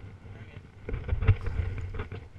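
Rubbing and knocking of a GoPro strapped to a walking Komodo dragon's harness, with its steps on wood-chip mulch. It is fairly quiet at first, then from about a second in comes a run of dull, irregular thumps as the lizard moves.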